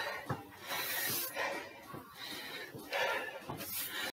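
A man breathing hard after exercise, hissy breaths about once a second, with a few soft footsteps on the stairs as he walks down.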